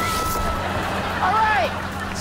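Rushing air and a steady low drone from an open aircraft doorway as people jump out, with a yell that rises and falls about a second and a half in.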